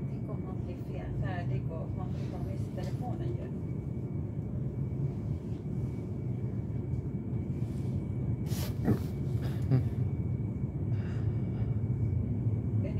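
Commuter train pulling out of an underground station, heard from inside the carriage: a steady low rumble that grows somewhat louder as it gathers speed, with a few sharp knocks about three quarters of the way through.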